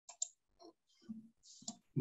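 A few faint clicks, then scattered small noises, picked up by a video-call microphone. Two sharp clicks come in quick succession at the start, and a soft hiss sounds just before the end.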